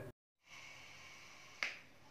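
Faint room noise with a single short, sharp click a little past halfway.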